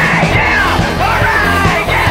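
Rock band playing live, with drums and electric bass under a singer yelling through a handheld megaphone; the voice comes through thin and high, its pitch sweeping up and down.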